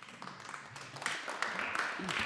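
A handful of people applauding, the clapping starting abruptly and building slightly.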